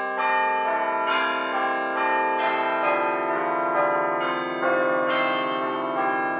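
Bells ringing, notes struck one after another every half second or so, each ringing on under the next.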